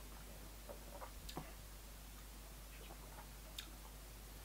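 Faint, irregular mouth clicks and lip smacks from someone tasting a sip of whiskey, a handful of soft ticks over quiet room tone.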